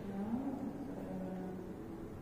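A man's voice making a low, drawn-out hum that rises a little in pitch and then holds steady for about a second.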